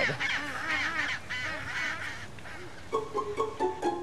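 Penguins calling: a run of harsh, wavering calls over the first two seconds. Plucked string music starts about three seconds in.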